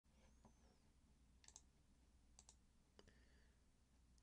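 Near silence: faint room hum with a few faint clicks, about a second apart.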